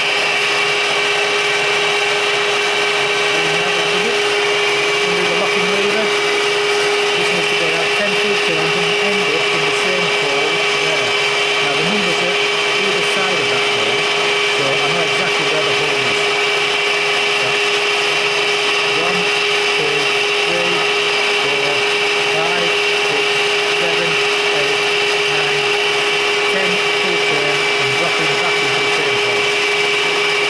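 Epple FM50 milling machine running steadily, a constant whine over a hum from its motor and spindle, with scattered light ticks and scrapes.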